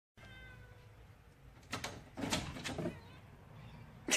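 A cat calling several times while holding a flower in its mouth, the calls loudest a little over two seconds in. A brief clatter about a second and a half in as a door is opened.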